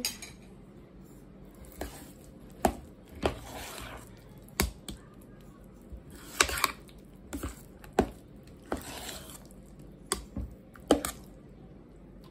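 A spoon stirring thick, creamy mashed potatoes in a stainless-steel pot: soft squelching with irregular clinks of the spoon against the side of the pot.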